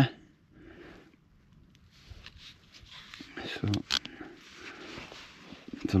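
Faint handling noise from a plastic head torch turned over in the hand: soft rustling with a few sharp small clicks about three and a half to four seconds in.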